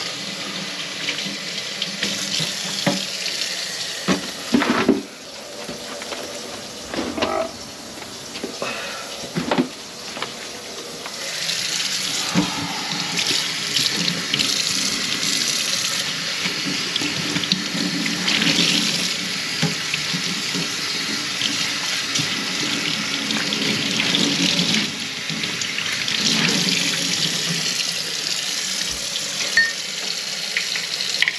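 Water running from the tap into a kitchen sink, with a few knocks and clatters about four to ten seconds in; the flow gets stronger and louder about twelve seconds in.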